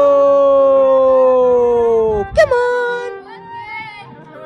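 A person's voice holding a long, drawn-out "whoa" that sinks slightly in pitch and breaks off a little over two seconds in. A short, sharp squeak follows, then quieter background music.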